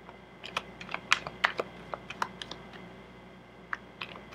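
A deck of tarot cards being shuffled by hand: a quick irregular run of sharp card clicks and snaps, then a pause and one last click near the end.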